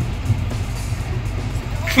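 Steady low rumble of a moving passenger train, heard from inside a sleeper compartment.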